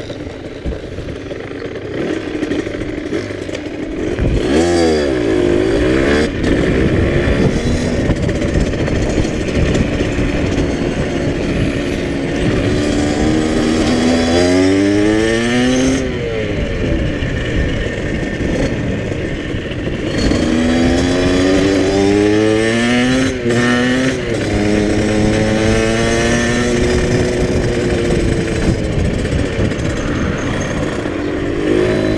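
Small dirt bike's engine running at low revs, then pulling away about four seconds in and accelerating through the gears, its pitch climbing and dropping back at each shift several times, heard from a helmet-mounted camera.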